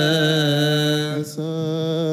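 A single male voice singing Coptic liturgical chant, holding a long drawn-out vowel with wavering ornaments. About a second and a quarter in, it breaks off briefly for a breath and then carries on.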